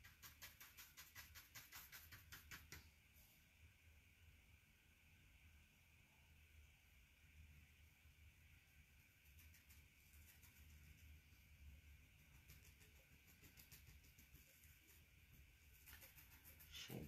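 Near silence: faint room tone with a low hum, and faint quick tapping, about five taps a second, for the first three seconds, a foam sponge dabbing paint.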